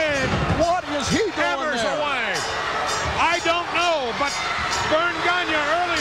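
Arena crowd shouting and yelling over a wrestling brawl, with repeated thuds of wrestlers' bodies hitting the ring canvas.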